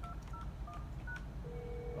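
Telephone keypad dialing: about four short two-pitch DTMF key tones in quick succession as a test call is placed, then a steady low tone comes in about a second and a half in.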